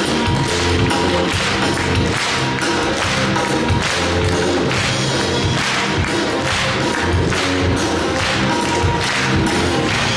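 A rock'n'roll song played live by a band with a string orchestra, an instrumental passage with a steady beat.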